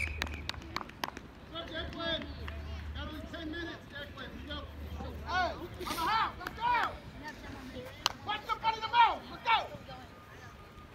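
Distant, unintelligible shouts and calls from players and spectators across the field, rising-and-falling yells that come thickest and loudest in the second half. A few sharp clicks in the first second.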